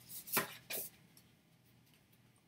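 A few short taps and rustles of paper postcards being handled and swapped, the sharpest about half a second in, stopping before the second second.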